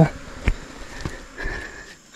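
Insects buzzing steadily, a thin high tone with a stronger mid-pitched drone in the second half, with two faint knocks about half a second and a second in.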